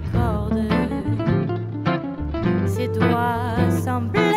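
Gypsy swing band playing: strummed acoustic rhythm guitar and bass under a lead melody with wide vibrato.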